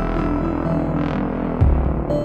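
Synthesizer music: a deep, throbbing synth bass, the set's Moog Minitaur bass synth, holds under a few sustained higher synth notes. A soft noise swell rises and fades about halfway through, and a low bass thump comes near the end.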